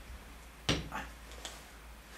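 Glass bourbon bottle handled on the table: one sharp knock under a second in as its cork stopper is pushed back in, then a couple of faint clicks.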